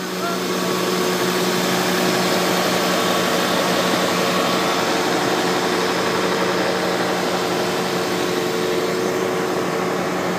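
A small engine running steadily at a constant speed: an even mechanical drone with a fixed low hum that does not rise or fall.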